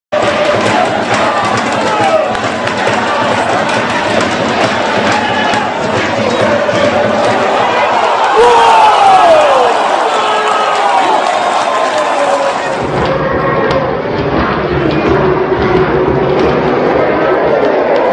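Football crowd in the stands shouting, chanting and cheering, with long falling cries rising over the din.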